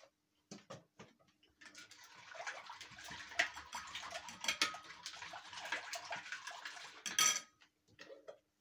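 Metal spoon stirring ayran in a ceramic bowl, scraping and clinking against the sides for several seconds, with one sharp ringing clink of the spoon on the bowl near the end.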